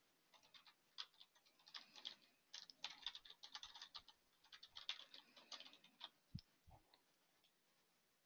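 Faint typing on a computer keyboard: irregular quick runs of key clicks for about six seconds, then two soft thumps.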